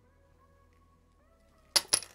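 Two sharp clacks about a fifth of a second apart near the end, as the screw and the 3D-printed spool holder parts being forced together slip from the hands onto the desk. Before them only faint background music.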